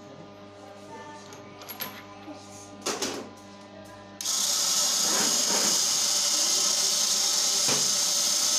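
Metal parts of an agarbatti (incense-stick) making machine clinking as they are handled. A little past halfway the machine is switched on and runs with a loud, steady hissing whir, with one knock near the end.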